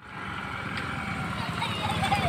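A TVS Scooty Zest 110 scooter's small single-cylinder engine running at low speed: a rapid, even putter that grows louder as the scooter comes closer. A voice starts near the end.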